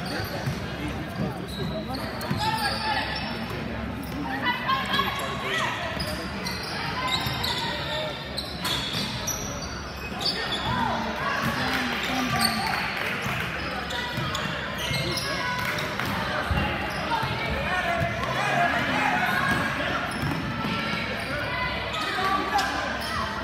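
Basketball game in a gym: a ball bouncing on the court amid indistinct shouting and chatter from players and spectators, echoing in the hall.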